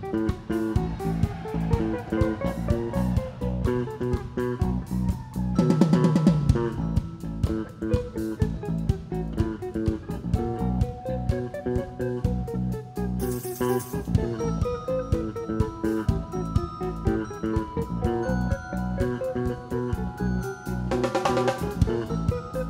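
Live rock band playing an instrumental jam: electric guitar figures over a fast, steady drum-kit beat and bass, with louder swells about six seconds in and near the end.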